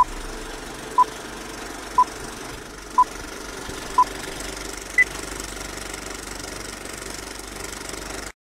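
Film-leader countdown effect: a short beep once a second, five at the same pitch, then a single higher beep about five seconds in, marking the last count. Under the beeps runs a steady, rattling film-projector noise.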